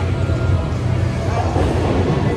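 Steady low rumble with indoor background noise and faint voices.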